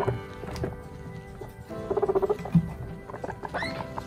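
Background music with long held notes, over guinea pigs chewing and tearing at a leaf in a run of small crunches.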